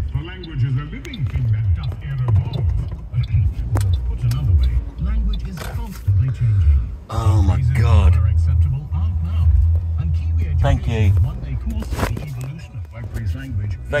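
Uneven low rumble inside a car's cabin, with indistinct voices over it.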